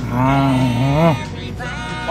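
A person's drawn-out hummed "mmm" of enjoyment while tasting food. It wavers and rises at its end about a second in, and a shorter vocal sound follows, over background music.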